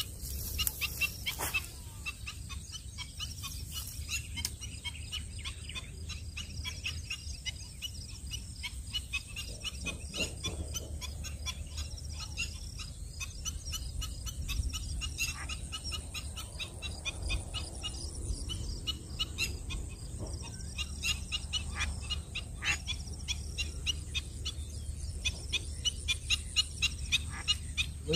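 Lakeside ambience of many small birds chirping and calling in quick short notes, with a faint steady high insect trill and a low rumble underneath.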